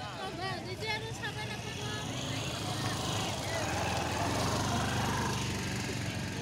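Outdoor street noise: people's voices in the first second or so, then a steady motor hum with road noise that grows louder.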